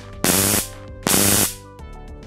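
High-voltage converter, rated 40,000 volts and fed by an 18650 battery through a push button, sparking across its two wire ends in two bursts of about half a second each, a harsh buzzing arc each time the button is pressed. Background music plays underneath.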